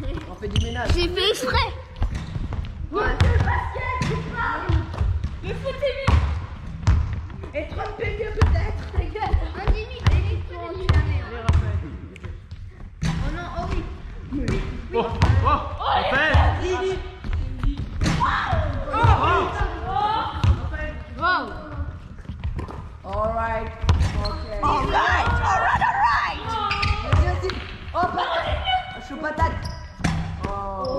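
Basketballs bouncing on a wooden gym floor again and again during a shooting game, each bounce a sharp thud that rings in a large, echoing hall. Children's voices call and shout over the bouncing.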